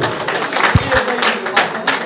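Hand clapping from a few people at a steady pace of about four claps a second, with a brief low thump just under a second in.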